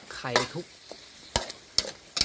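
Metal spatula scraping and knocking against a large steel wok while stir-frying rice noodles, with the food sizzling in the pan. A few sharp clicks of the spatula on the wok stand out, about a second in and near the end.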